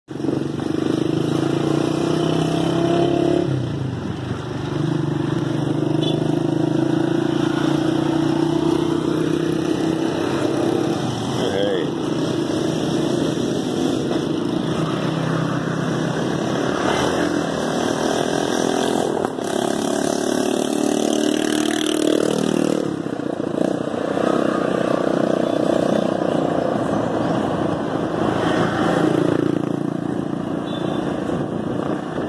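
Motorcycle engine of a motorized tricycle running under way, heard from its sidecar, the pitch dropping and climbing again several times with throttle and gear changes, over steady road noise.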